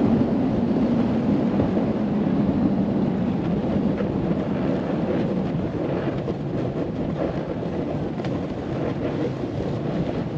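Steady wind rush over the microphone while riding downhill, mixed with the hiss and scrape of a snowboard sliding over groomed snow.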